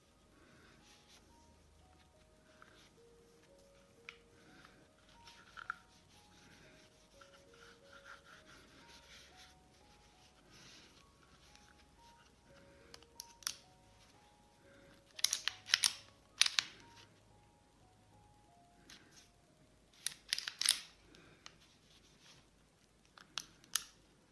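Quiet background music with a slow, simple melody, broken in the second half by several short bursts of clicking and rubbing as a Star DKL pistol is handled and wiped with a cloth.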